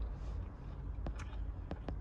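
A person eating from a bowl with a plastic fork: quiet chewing with four faint clicks in the second half, over a low steady rumble.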